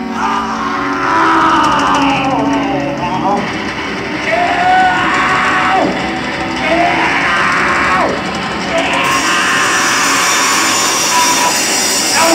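Live garage-punk band playing distorted electric guitars over drums, loud and rough, the guitars bending and sliding in swooping glides with no singing. About nine seconds in, a high hiss of noise rises over the music.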